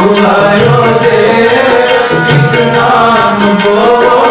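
Sikh Gurbani kirtan: male voices singing a shabad over the steady reed drone of Yamuna harmoniums, with a tabla keeping a regular rhythm of strokes.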